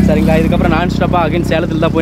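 Men talking over a motorcycle engine running steadily at idle, a low even pulsing hum beneath the voices.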